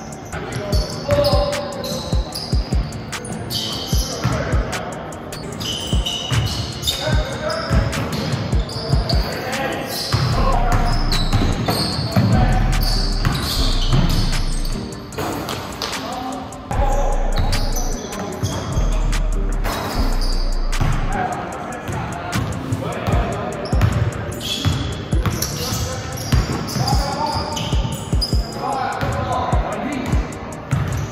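Live basketball game on a hardwood gym court: the ball bouncing in repeated sharp thuds, sneakers squeaking in short high chirps, and players' voices calling out across the hall.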